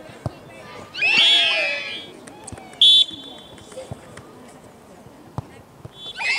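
A football struck hard from a penalty kick, a sharp thud just after the start. About a second in comes a burst of high-pitched cheering and screaming from young girls' voices, lasting about a second. Near the middle a referee's whistle gives one short, sharp blast, the loudest sound.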